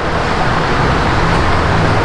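Steady traffic noise from a busy multi-lane avenue below: the tyres and engines of passing cars and buses, with a continuous low engine hum underneath.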